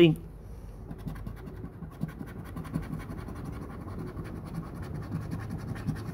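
Scratch-off lottery ticket being scratched, the coating over the winning numbers rubbed off in quick, continuous strokes.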